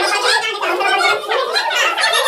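Several children and adults talking and calling out over one another in a loud jumble of voices.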